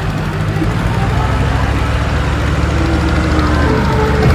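Diesel tractor engine running steadily under load while it pulls a disc harrow through ploughed soil, a continuous low drone.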